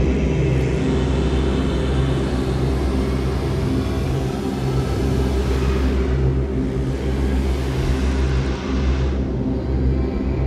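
Dark ambient electronic drone: several steady low tones held under a hiss that swells and fades twice.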